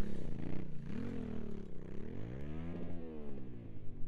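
Yamaha Ténéré 700's parallel-twin engine revving up and down as the bike is ridden through soft sand. The pitch rises and falls several times, with a longer climb about halfway through.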